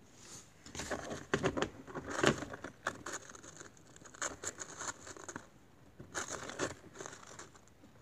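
Irregular close-up scraping, rustling and clicking of handling noise, in bursts that are loudest in the first few seconds and then come more sparsely.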